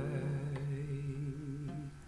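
A man's voice holding one long sung note with vibrato that fades out just before the end, over an acoustic guitar.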